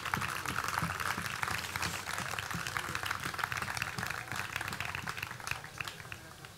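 Audience applauding, the sound of many hands clapping together, dying away near the end.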